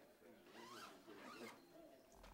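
Faint rustle and zip of clothing as a purple vestment is put on and adjusted.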